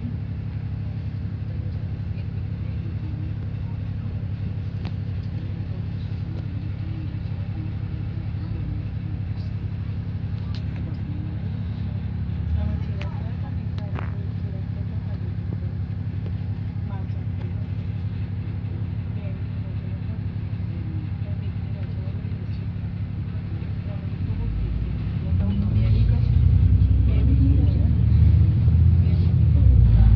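Double-decker bus engine idling with a steady low hum, heard inside the upper deck. It revs up with a rising pitch and grows louder near the end as the bus pulls away.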